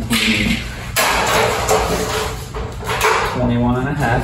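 Sheet metal scraping and rustling as a large flat sheet is handled and a tape measure is run across it, starting with a sharp knock about a second in.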